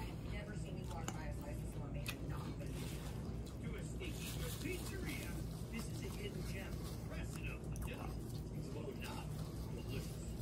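A person chewing a mouthful of pita sandwich, with faint wet mouth clicks, over a steady low background hum.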